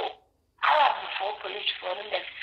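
Speech: a person talking, with a short pause about half a second in before the talking resumes.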